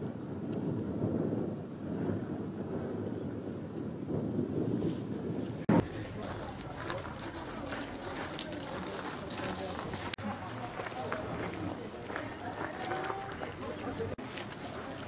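Wind rumbling on the microphone for the first few seconds. After a sudden cut with a loud click about six seconds in, outdoor ambience follows, with people's voices in the background and scattered clicks and knocks.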